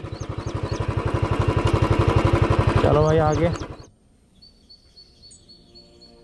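Royal Enfield Bullet's single-cylinder engine running at idle with a rapid, even thump, about eight beats a second, growing louder. It stops abruptly a little before four seconds in, leaving birds chirping faintly.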